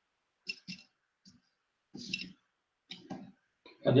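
Several light clicks and taps, some in quick pairs, from drawing tools being handled on the desk.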